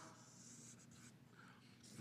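Faint scratching of a felt-tip marker drawing long strokes on paper.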